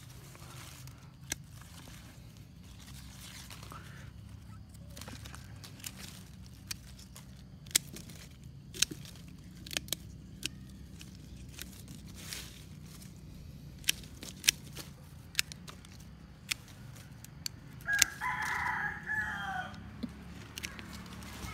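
Pruning shears snipping small shoots off a fig tree trunk: sharp clicks every second or so over a steady low hum. Near the end a rooster crows once, for about a second and a half, louder than the snips.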